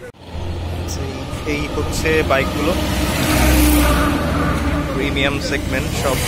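A road vehicle passing on the highway: a rumbling engine and tyre rush that swells to its loudest a little past the middle, then eases off. Voices talking in the background.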